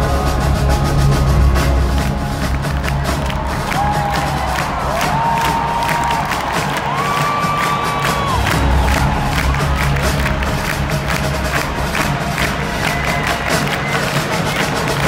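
Live band music in a large arena, heard from among the audience: steady drumming with a heavy bass and brass, over a cheering crowd.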